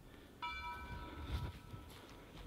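A single bell-like chime, struck about half a second in and fading away over about a second and a half, over a faint low rumble.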